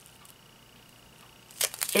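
Plastic bag of black resin diamond-painting drills crinkling as it is handled, a few sharp crackles starting about a second and a half in.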